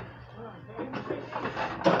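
Only indistinct speech: voices murmuring over a steady store background, growing louder in the second half.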